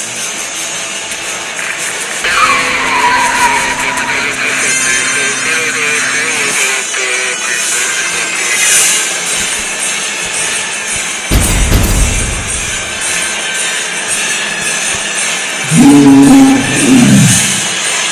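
Background music under airstrike sound effects: a falling whistle a couple of seconds in, then a sudden deep explosion about eleven seconds in. Near the end comes a loud pitched cry.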